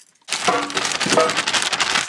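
Frozen waffle-cut potato shapes clattering out of a crinkling plastic bag into an air fryer basket: a dense run of hard little knocks and rustles that starts just after a brief pause.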